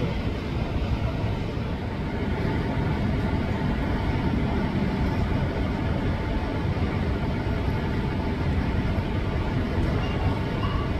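Steady roar of a Boeing 737's jet engines at takeoff power, a rumbling noise with no distinct events.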